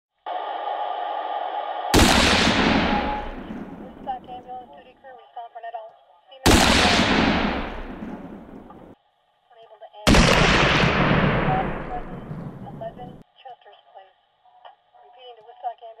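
Three loud booms, about two, six and a half and ten seconds in, each starting sharply and fading away over two to three seconds, after a steady droning tone at the start.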